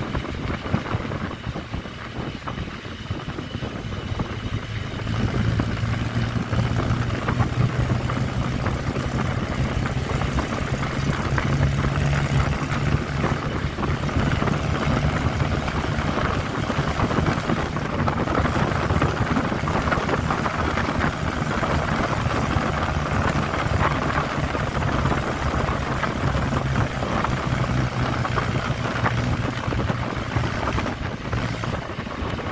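A moving vehicle's engine runs steadily under road noise, heard from its side window. The engine hum grows louder about five seconds in and then holds steady.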